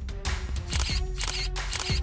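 Three camera-shutter clicks, about half a second apart, in the second half, over dramatic background music with low drum hits.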